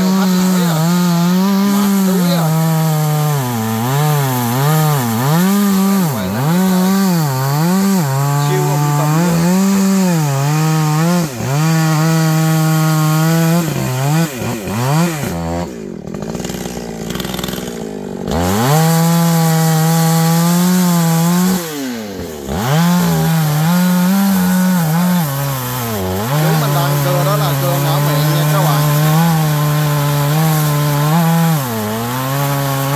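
Two-stroke GZ4350 chainsaw cutting into the trunk of a very hard cây cầy (wild almond) tree, its engine pitch dipping and recovering over and over as the chain bites. About halfway through it drops to idle for a few seconds, then goes back to full throttle and cuts on.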